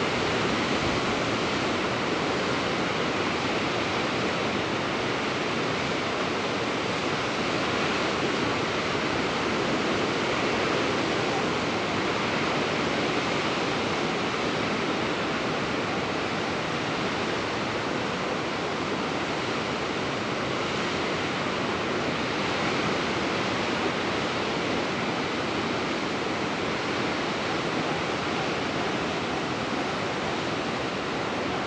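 Ocean surf breaking against a rocky shore, heard as a steady, even rush of noise with no single wave standing out.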